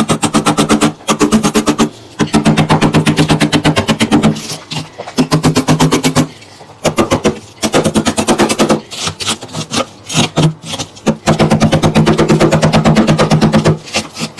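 A pink plastic scraper raking thick frost off the walls of a chest freezer in fast bursts. Each burst is a rapid rattling chatter of about ten strokes a second lasting a second or more, with short pauses between.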